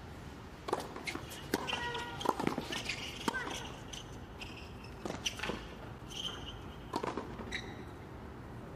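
Tennis rally in doubles on a hard court: a string of sharp racket strikes on the ball and ball bounces, several shots in about seven seconds, with short high-pitched squeaks of sneakers between them.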